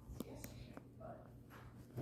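Quiet room tone with a faint low hum and a few faint clicks of handling in the first half second, plus a faint murmur about a second in.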